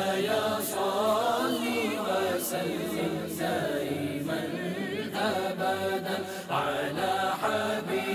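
Unaccompanied vocal chanting of a devotional song, its melody wavering and ornamented.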